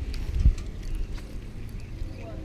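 Wind rumbling on a body-worn camera's microphone, with a single dull thump about half a second in.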